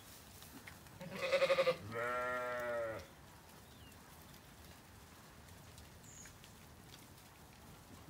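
Zwartbles ewe bleating twice about a second in: a short quavering bleat, then a longer, steadier bleat.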